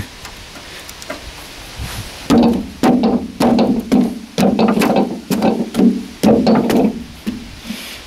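Boot stamping on the rusted steel floor of a wheelbarrow tub, a run of knocks at about two a second, each with a brief metallic ring. The rust-thinned floor gives way and opens a hole.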